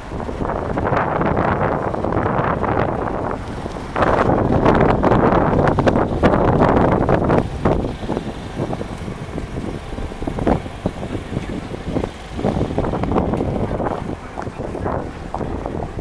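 Wind buffeting the handheld camera's microphone: a loud, uneven rumble that swells and drops, strongest for a few seconds in the middle, with scattered small clicks.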